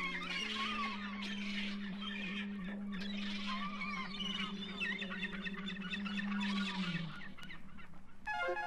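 Song intro from a vinyl record: one long held low note with a dense chatter of bird calls over it. The held note slides down slightly near the end.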